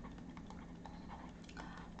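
Quiet room tone with a steady low hum and a few faint, scattered ticks of a stylus on a drawing tablet during handwriting.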